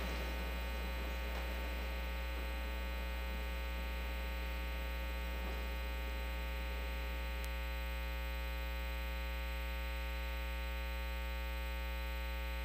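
Steady low electrical mains hum from the sound system, with no one speaking.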